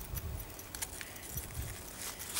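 Faint handling sounds of plastic cards and the handbag: a few light clicks and rustles over a low rumble.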